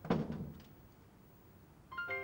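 A single thump of a wooden door being shut, with a short ring of the room after it. Just before the end a violin starts a slow, sad music cue.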